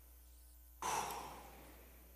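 A man sighs once, breathing out close to the microphone about a second in. The breath starts suddenly and fades away over about half a second.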